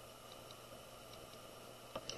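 Very faint gray chalk pastel stick rubbing on drawing paper, with a few light ticks, close to near silence.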